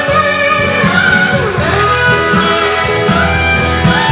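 Live blues band playing an instrumental passage: an electric guitar solo on a Fender Telecaster with bent, sliding notes over bass and drums.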